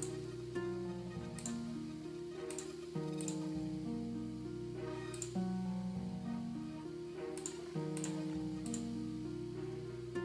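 A looping orchestral dancehall string part plays back through a granular echo effect, with sustained chords that change about once a second. About eight sharp mouse clicks fall at irregular moments over the music.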